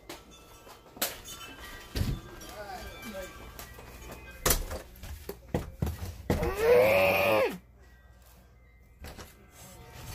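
A person's voice holding one long note that rises and falls, about two-thirds of the way in, after a few shorter vocal sounds. Scattered knocks and bumps come from a handheld phone being moved about close to the body.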